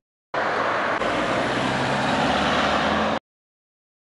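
Steady road-traffic noise from the street beside a bus stop, an even hiss with a faint low hum. It starts about a third of a second in and cuts off abruptly a little after three seconds.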